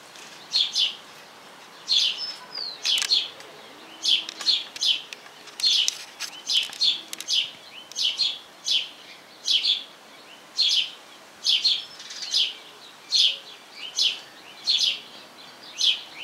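House sparrow fledgling begging: short, high chirps that drop in pitch, repeated about twice a second, sometimes in quick pairs, as it asks to be fed.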